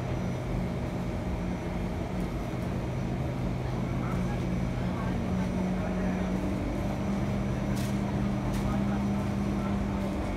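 Steady hum of a C151 MRT train's onboard equipment while it stands at the platform with its doors open, with faint voices and two short clicks about eight seconds in.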